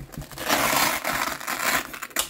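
Hook-and-loop fastener rasping for about a second and a half as the placard's hook field is worked against the plate carrier's loop field.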